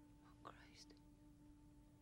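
Near silence: a faint, steady low note held in the film score, with a soft breathy sound, like a whispered gasp, about half a second in.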